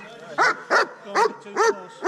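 A dog barking, four short barks about half a second apart.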